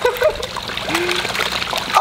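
Water splashing and churning as a crowd of koi thrash at the surface in a feeding frenzy around cupped hands.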